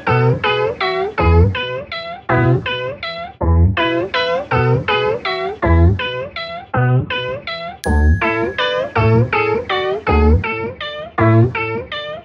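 Music built from a sampled cat meow, pitched into a fast run of notes at about four a second over a low bass thump about once a second. It sounds like an old-school RPG theme.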